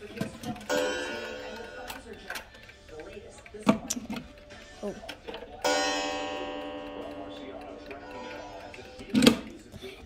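Regulator wall clock striking as its minute hand is turned by hand: two ringing strikes about five seconds apart, each a tone with many overtones fading slowly, the second ringing on for about four seconds. Handling clicks and knocks between, the loudest near the end.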